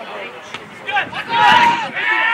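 Men's voices shouting on an outdoor football pitch, the loudest call about one and a half seconds in.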